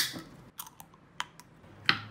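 Aluminium beer can being opened by its ring pull: a loud sharp pop as the seal breaks, followed by a few light metallic clicks. Another sharp knock comes near the end.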